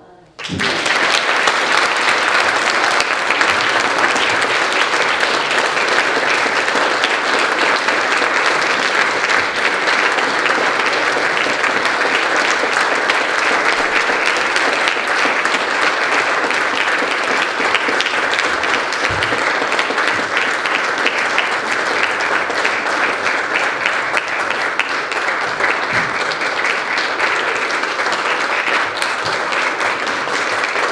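Audience applause, starting suddenly about half a second in and keeping up steadily.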